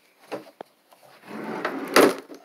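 A wooden desk drawer pulled open: a light knock and click, then about a second in a scraping slide that ends in a louder knock as the drawer reaches its stop.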